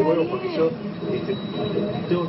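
Voices talking in a rough, noisy recording, the words hard to make out, with a faint thin high tone running through the middle.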